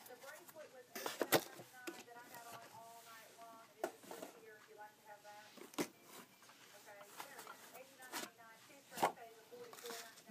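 Scattered light clicks and taps of ring boxes and rings being handled and swapped, over a faint voice in the background.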